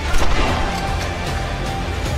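Dramatic film-trailer music with a steady low drone and a held tone, broken by a single loud gunshot a fraction of a second in.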